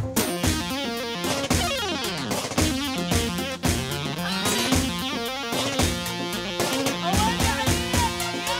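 Instrumental music played live on a Korg Pa4X arranger keyboard: a melodic lead over a steady drum beat.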